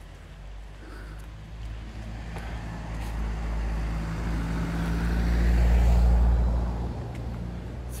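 A motor vehicle passing on the nearby road, its low engine drone building to a peak about six seconds in and then fading away.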